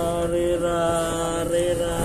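A man's voice chanting, holding long notes at a steady pitch.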